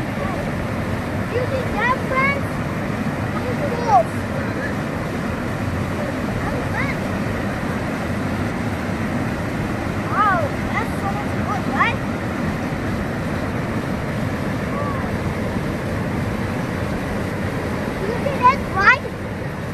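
Elbow River rapids: fast white water running over rock, a steady, unbroken rush.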